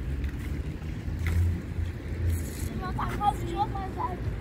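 Low, fluctuating rumble of wind buffeting the microphone outdoors, with a small child's brief high-pitched vocal sounds about three seconds in.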